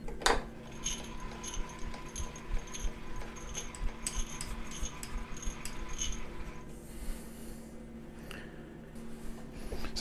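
Light metallic clicks and ticks, roughly two a second for several seconds, from cranking a milling machine's axis feed while a dial test indicator runs along the extended quill. A faint steady hum lies underneath and fades about seven seconds in.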